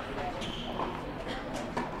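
Quiet ambience of a large indoor tennis hall, with faint distant voices and a few soft knocks of a ball or footsteps on the court.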